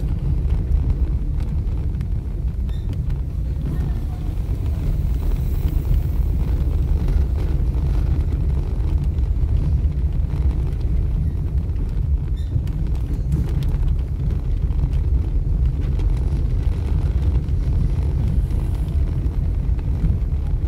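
Steady low rumble of a car driving over stone paving, heard from inside the cabin: tyre and engine drone with no distinct events.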